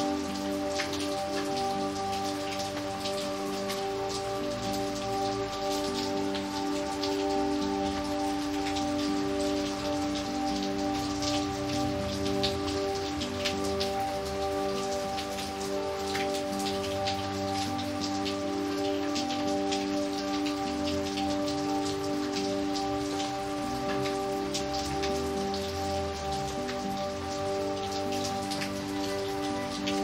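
Steady rain falling on wet pavement, with many separate drop hits heard in the downpour. Soft, slow music of long held chords that shift gradually plays beneath it.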